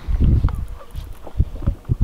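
Handling noise from a handheld camera being swung about: a short low rumble at first, then three separate low thumps in the last second.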